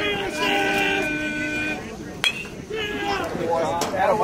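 Voices on the field calling out, one long drawn-out shout near the start, then a single sharp crack of a metal baseball bat hitting the pitch about two seconds in, followed by more shouting.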